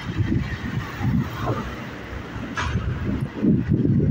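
Wind buffeting a phone microphone while riding a bicycle: an uneven low rumble that swells and fades in gusts.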